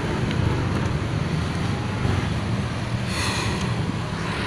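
Motorcycle engine running at low speed, with wind buffeting the microphone.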